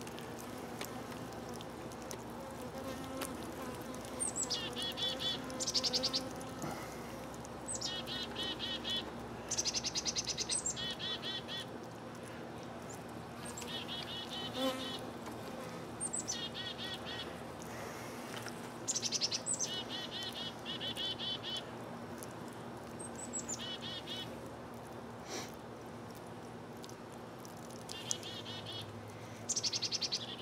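Honeybees buzzing steadily around an open top-bar hive. Over it a songbird sings the same short phrase every two to three seconds: a high downward slur followed by a quick trill.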